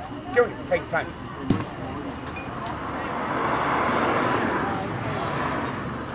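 A passing vehicle's noise swelling and fading over a couple of seconds, with a few short shouted calls near the start and a single sharp knock about a second and a half in.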